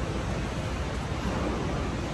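Steady rushing of water from an indoor artificial waterfall or stream in a rock diorama, heard as an even hiss.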